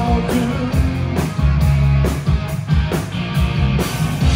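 Live rock band playing an instrumental passage: distorted electric guitar over electric bass and a drum kit keeping a steady beat.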